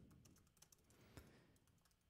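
Faint computer keyboard typing: a few soft, scattered keystroke clicks.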